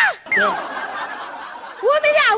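A high voice gives a rising-then-falling exclamation, then a quick falling whistle-like glide, followed by about a second of breathy, laugh-like noise.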